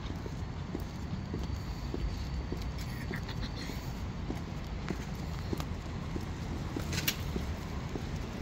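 High-heeled boots clicking on a paved sidewalk in a steady walking rhythm, about two steps a second, over a low steady hum of city traffic. One sharper click stands out about seven seconds in.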